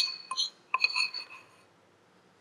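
A metal spoon clinking against the side of a bowl of sugar glaze. The ring of one clink dies away at the start, then a few lighter clinks come about a second in.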